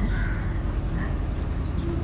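A crow cawing faintly twice, over a steady low rumble of outdoor background noise.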